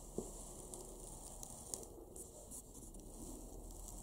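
Quiet room with a steady faint hiss, broken by a few small clicks and rustles of things being handled.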